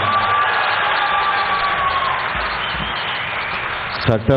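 Audience applause and cheering from a large crowd: steady, dense clapping that eases off slightly toward the end.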